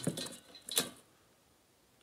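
A brief, sharp tap about three quarters of a second in, with a few fainter clicks before it, then near silence.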